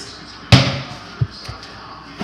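A single sharp knock about half a second in, dying away quickly, followed by two lighter taps.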